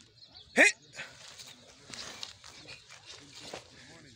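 A single short, sharp cry rising steeply in pitch about half a second in, by far the loudest sound, over faint outdoor noise and low voices.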